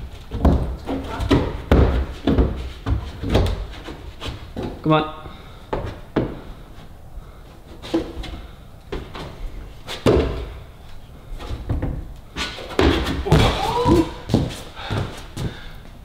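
A climber's hands and shoes thudding and slapping against the holds and wall panels of an indoor bouldering wall, a steady string of knocks and thumps through the whole climb. A voice sounds briefly about five seconds in and again a few seconds before the end.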